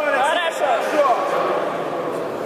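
Indistinct male voices calling out, over the steady murmur of a crowded hall; the calling stops after about a second.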